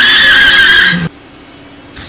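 A loud, wavering high-pitched tone from the edited-in soundtrack, cutting off abruptly about a second in; quieter room sound follows.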